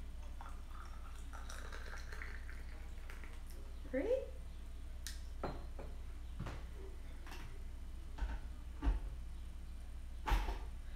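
Hot water poured in a thin stream from a gooseneck kettle into a glass pitcher of green tea leaves for the second infusion, lasting a few seconds. Then several light clinks of glass and porcelain as the teaware is handled.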